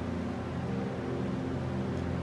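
A steady low hum with no clicks or strokes standing out from it.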